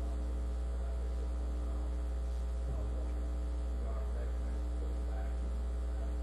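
Steady low electrical mains hum on the recording, unchanging throughout, with faint distant voices underneath.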